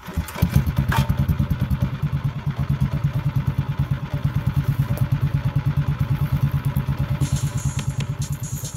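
Harbor Freight Predator 212cc single-cylinder engine pull-started with its recoil cord, catching almost at once, then idling with an even, rapid put-put through a full exhaust with an Akrapovic slip-on muffler.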